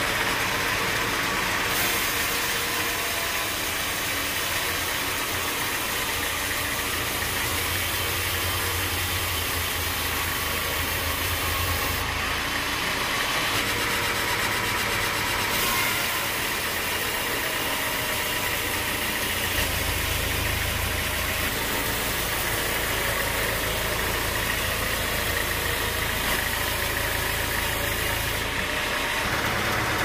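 Band sawmill cutting lengthwise through a teak log: the blade and its drive machinery run with a steady, unbroken mix of machine noise and sawing hiss.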